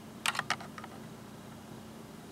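A quick run of four or five small plastic clicks and taps in the first second as the LEGO model is handled, then room tone.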